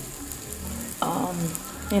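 Egg fried rice sizzling in a steel kadai as it is stirred with a perforated steel skimmer.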